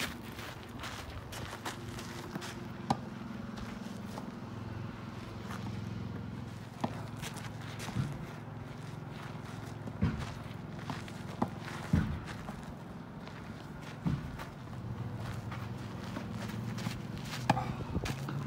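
Tennis ball being stopped and hit with rackets and bouncing on gravel during a slow rally: sharp single knocks every one to few seconds, irregularly spaced, over a steady low hum.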